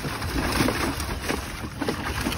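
A dog splashing and thrashing in shallow water in a plastic kiddie pool, with irregular splashes, over wind noise on the microphone.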